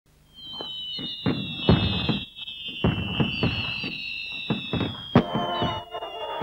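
Fireworks going off: a string of sharp bangs and crackling bursts at irregular gaps of a fraction of a second to a second, with high thin whistles running over them and slowly falling in pitch.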